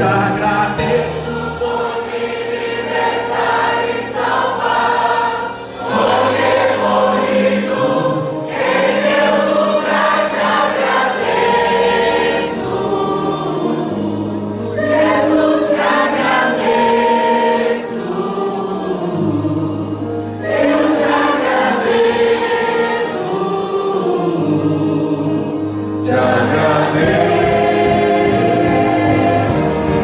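A gospel hymn sung by many voices together, accompanied by a church orchestra of violins and keyboard, in long sustained phrases.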